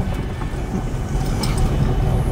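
Low, steady rumble of a pickup's engine and tyres driving slowly over a rough dirt track, heard from inside the cab.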